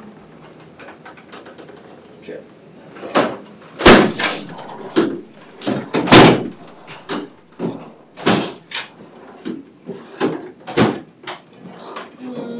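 Drawers of a bedside supply cart being pulled open and pushed shut as supplies are searched: after a quiet start, a string of sharp knocks and bangs, the loudest about four and six seconds in.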